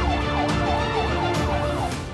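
Police vehicle siren sounding in a fast rise-and-fall yelp, about three sweeps a second, stopping near the end, with music underneath.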